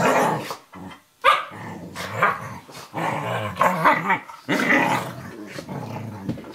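A Eurohound puppy and a Nova Scotia Duck Tolling Retriever play-fighting, growling and barking in a string of short bursts about a second apart. It sounds fierce but is play.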